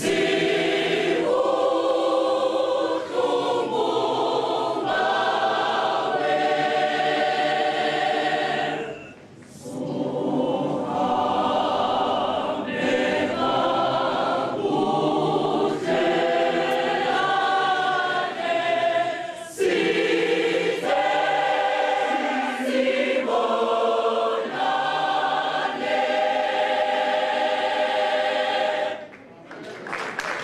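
Church choir singing in harmony in long held chords, with two short breaks, about nine and about nineteen seconds in. The singing stops just before the end.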